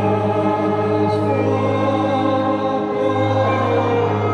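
Slow church hymn: many voices singing long, held chords over a sustained keyboard accompaniment, with the chord changing shortly after the start and again about three seconds in.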